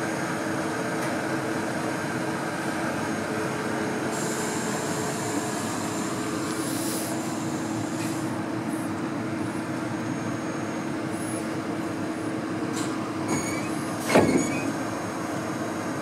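ED90 electric rack locomotive standing at the platform with its on-board machinery running, a steady hum with a low droning tone. A loud knock about fourteen seconds in, with a few brief high squeaks before it.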